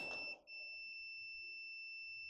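Digital multimeter's continuity beeper sounding a steady high-pitched tone, with a brief break about half a second in. The probes are across a low-resistance path reading about six ohms, so the meter signals continuity.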